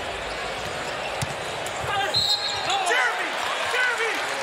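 Arena crowd noise during live basketball play, with the ball bouncing on the hardwood court and short high squeaks in the second half, typical of sneakers on the floor.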